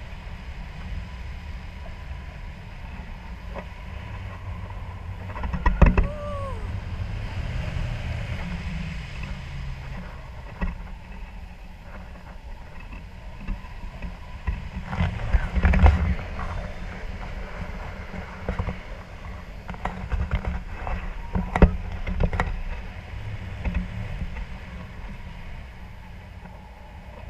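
Wind buffeting the action camera's microphone in flight under a tandem paraglider, an uneven low rumble that swells and fades. Sharp knocks and rustles from the camera mount and harness cut in a few times, loudest about six seconds in and around the middle.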